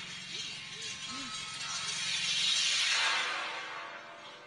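A huge homemade wind chime of hundreds of hanging metal rods clashing together in a dense shimmering jingle. It swells to its loudest about two and a half seconds in, then thins out into lingering ringing tones.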